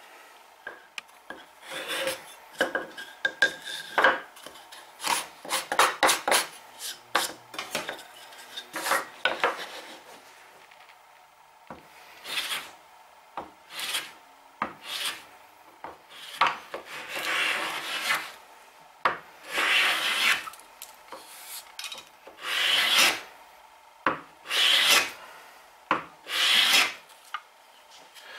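Hand plane taking shavings off the edges of a freshly glued wooden splice joint, stroke after stroke. The strokes are short and quick for the first ten seconds, then longer, about a second each, with pauses between.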